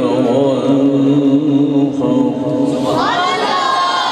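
Men's voices in sustained melodic devotional chanting, long held notes wavering in pitch; about three seconds in, one voice rises to a high held note.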